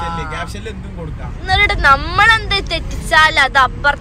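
People talking over a steady low rumble of road vehicle noise, the voices loudest from about a second and a half in.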